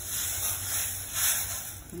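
Dry couscous poured from its box into a pot of hot simmering water, a soft hiss of falling grains that swells a couple of times.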